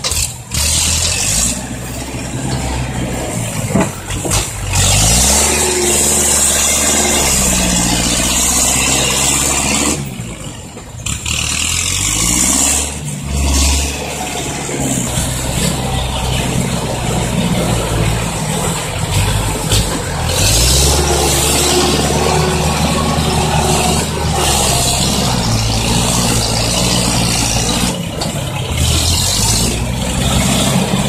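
Diesel engine of a six-wheel Isuzu dump truck running and revving, its pitch rising and falling again and again as the truck works and manoeuvres. The sound drops briefly about a third of the way in, then the engine runs on loudly.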